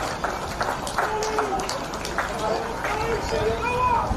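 Players' shouts and calls on an Australian rules football ground, short pitched cries coming more often from about a second in, over a steady low rumble of wind on the microphone.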